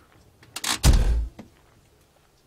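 An ambulance's side door being unlatched and swung open: a short click about half a second in, then a louder, heavier clunk.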